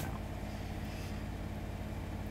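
Domestic washing machine running with a steady low mechanical hum.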